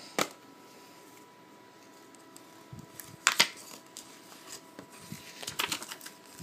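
Sharp clicks and snaps as a metal Blu-ray steelbook case is handled and opened, with the loudest snap about three seconds in.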